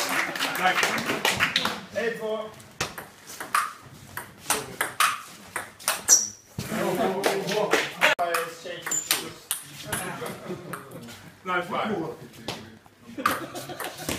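Table tennis rally: the ball clicking sharply off paddles and the table in quick, irregular strikes, with men's voices exclaiming between shots.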